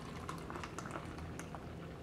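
Thick green vegetable juice pouring in a steady stream from a plastic collection container into a plastic cup, a faint continuous trickle.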